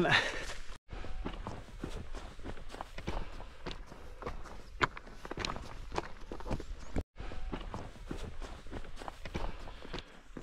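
Footsteps of a hiker walking on a mountain trail, an irregular run of steps, broken twice by sudden dead silences where the footage cuts.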